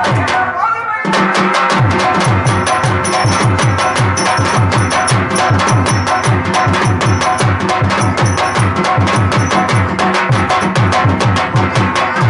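Live drum accompaniment for a Tamil stage drama: fast, dense drum strokes, the deep ones dropping in pitch, over held instrumental tones. The drumming starts about a second in as a voice fades out.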